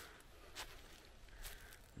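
Near silence with two faint footsteps on the cleared forest floor, about half a second in and again a second later.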